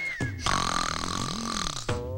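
Film background music mixed with a comic sound effect: a short falling whistle at the start, then a buzzing sound that lasts until just before the end.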